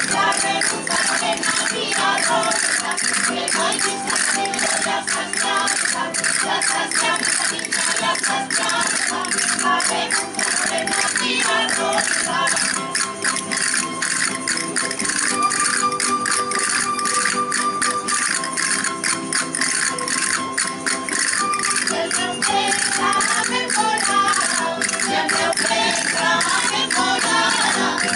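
Traditional Aragonese jota music with rapid castanet clicking running through it, the dancers playing the castanets in time.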